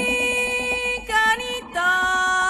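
A woman singing long held notes, moving to a new note about a second in.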